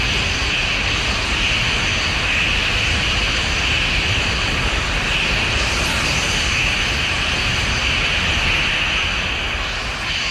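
Anime sound effect of a blazing energy aura: a steady rushing noise, like a jet, that holds without a break and eases off slightly near the end.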